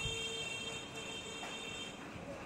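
Hot air rework gun blowing steadily over a BGA reballing stencil, melting solder paste onto an eMMC chip. A high thin whine and a lower tone that breaks into short pulses run over it, both cutting off just before the end.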